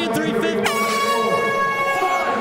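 An air horn sounds about two-thirds of a second in: one steady, high-pitched blast held for well over a second, over a man's voice.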